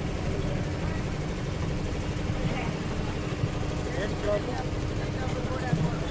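A steady low mechanical hum, like an idling engine, with a faint steady tone in it and faint scattered voices from a crowd.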